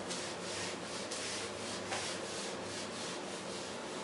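Whiteboard eraser rubbing across a whiteboard in quick back-and-forth strokes, several a second, wiping off marker writing.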